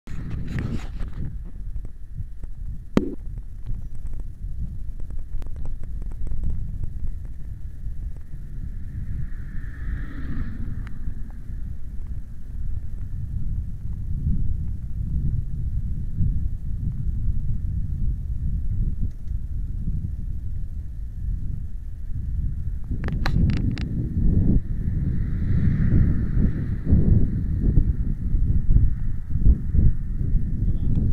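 Uneven low rumble of wind buffeting an action camera's microphone outdoors, with a sharp knock about three seconds in and a few clicks late on. Two brief hissing swells rise and fade, about ten seconds in and again near the end.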